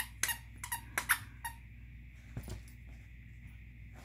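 Squeaky rubber dog toy squeaking as a puppy bites on it: a quick run of short squeaks over the first second and a half, then one more a second later.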